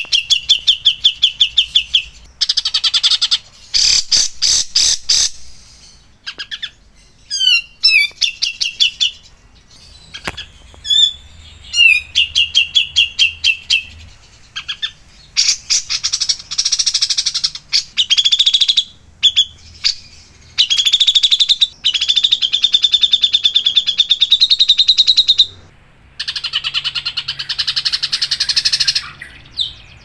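Caged songbird singing in bouts of fast, rapidly repeated notes and trills, with a few harsher rattling bursts and short pauses between bouts.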